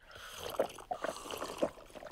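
Cartoon drinking sound: a glass of water gulped down in a quick run of gulps and slurps.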